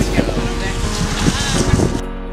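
Indistinct young male voices, with wind noise on the microphone.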